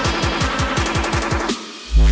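Hardtekk dance track build-up: a rapid kick-drum roll, about eight strokes a second, under synths. It cuts out about one and a half seconds in, leaving a brief, thin lull before the drop.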